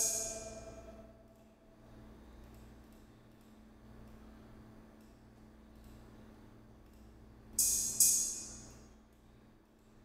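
Cymbal sounds played back through studio monitors while a beat is being built: a ringing hit fades out over the first second, then after a quiet stretch with a low hum, two sharp cymbal hits about half a second apart near the end, each ringing away.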